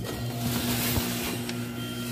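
Low-energy power-operated door's motor running as the door swings open: a steady low hum that starts abruptly.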